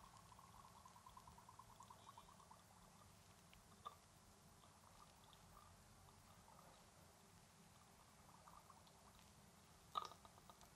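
Near silence: room tone, with faint soft pulses in the first couple of seconds and one faint click about four seconds in.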